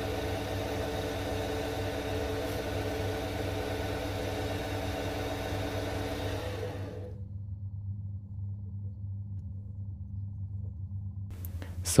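Small lathe running steadily, with abrasive cloth rubbing on the end of a spinning displacer piston. About seven seconds in, the hiss of the rubbing drops away and only the machine's low hum remains.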